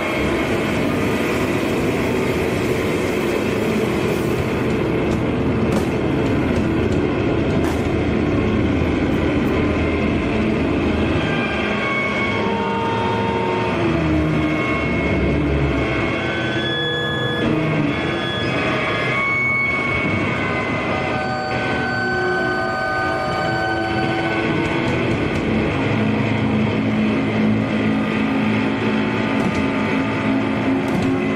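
Powerviolence band playing live, loud and dense: distorted guitar and bass with drums in a steady wall of noise. Through the middle stretch the low end drops back and held, feedback-like notes step between pitches before the full wall returns.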